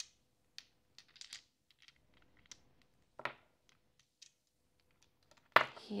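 Three small astrological dice clicking lightly against each other and the tabletop as they are shaken and cast: a handful of faint, scattered clicks spread over several seconds.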